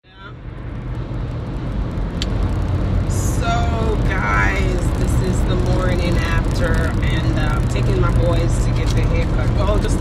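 Steady low rumble of a car's cabin while driving, with a voice talking in short snatches from about three seconds in.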